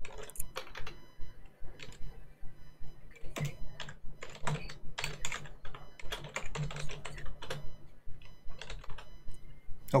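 Typing on a computer keyboard: a run of irregularly spaced key clicks, a few a second.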